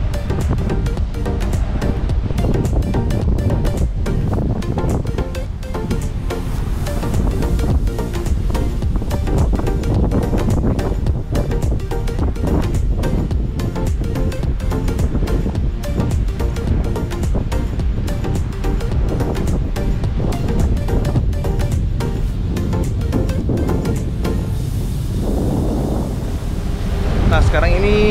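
Wind buffeting the microphone high on the deck of a ship at sea, a rough, fluttering roar with the sea underneath, under background music.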